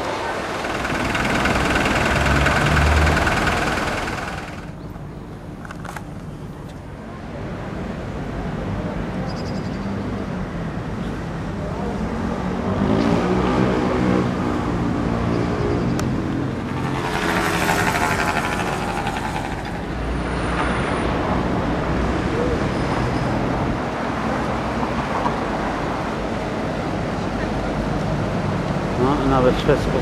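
Outdoor street ambience: road traffic, with a vehicle passing close by in the first few seconds, and people's voices talking at times.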